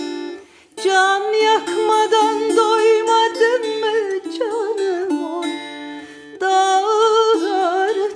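A woman singing a Turkish folk song (türkü) in a wavering, ornamented melodic line, accompanied by a plucked ruzba, a small long-necked Turkish lute. The voice breaks off briefly just before the first second and drops to a quieter stretch past the middle.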